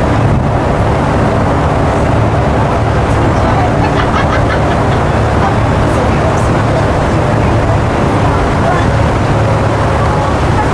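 Steady low rumble of a canal cruiser's engine running under way, with wind on the microphone.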